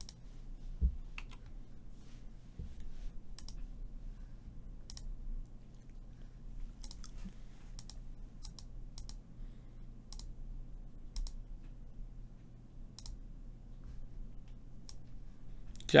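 Computer mouse clicking, single sharp clicks spread irregularly over several seconds as buttons are pressed, with a dull low thump about a second in.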